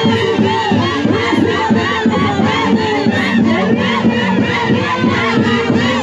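A crowd of dancers shouting and whooping together over live Santiago folk band music, whose held notes run underneath steadily.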